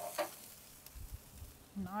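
Faint sizzling of trout fillets frying in butter and apple cider in an electric skillet, with a light clink just after the start and a few soft low thumps about a second in.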